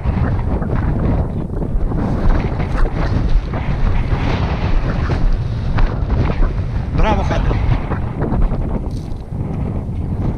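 Wind buffeting the microphone, a steady low rumble, with a brief human call about seven seconds in.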